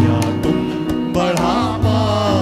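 A live worship band plays: a man sings with acoustic guitar and electronic keyboards over a steady beat. The voice comes in a little past one second.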